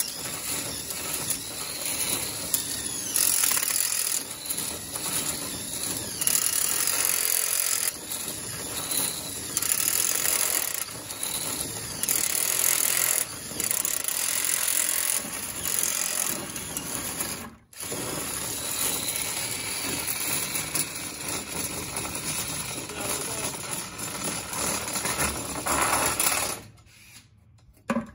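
Cordless drill running in repeated bursts, driving a long extension bit deep into the foam-and-fiberglass hull of a boat. The sound drops out briefly a little past halfway and stops near the end.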